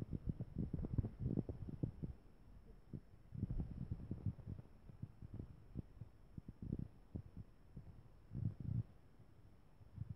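Muffled, low thumps and rumbles from a handheld phone's microphone, coming in irregular clusters: busiest in the first two seconds, again around the middle and once more near the end.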